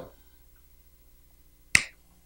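One sharp click about three quarters of the way through, dying away quickly, over quiet room tone.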